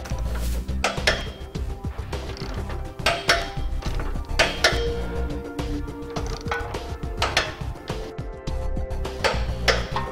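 Socket wrench ratcheting in short bursts of clicks, tightening the trailer hitch's mounting bolts into the vehicle frame, over background music.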